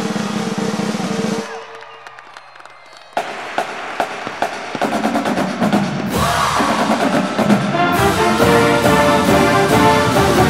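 Cheering fades out in the first second and a half. A school pep song starts just after three seconds with snare and bass drum strokes, and the fuller band builds in at about six seconds.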